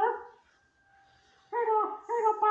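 A string of short, pitched dog-like vocal noises from a person in a dog costume, several a second. They break off just after the start and pick up again about a second and a half in.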